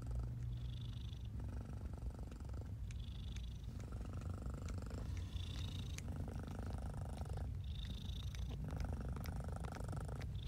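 Domestic cat purring close up while tending a newborn kitten, a steady low purr that swells and fades about every two seconds with each breath, with faint soft clicks scattered through it.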